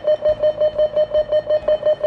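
Industrial site incident alarm on a tannoy system: a series of rapid pips, about six a second, all on one steady mid pitch.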